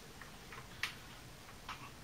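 Faint clicks of the hard plastic body of a 1989 G.I. Joe Cobra Condor toy jet being handled and turned over, two small ticks about a second apart over low room tone.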